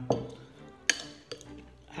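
Metal spoon clinking against a ceramic cereal bowl: a few sharp clinks, the loudest about a second in.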